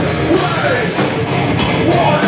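Heavy metal band playing live, drum kit and amplified instruments under a vocalist singing into a microphone.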